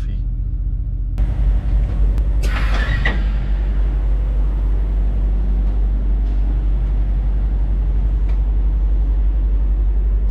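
Semi-truck diesel engine idling with a steady low hum. About a second in the sound opens up into a wider, louder noise, with a brief louder burst around two and a half seconds in.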